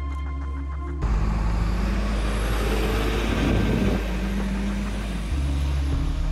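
Background music, then from about a second in, a sudden switch to outdoor street noise: a low, steady rumble of vehicle engines and traffic.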